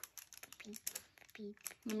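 Scattered light clicks and crackles of small plastic toy packaging being handled in the hands, with a few quiet words from a child.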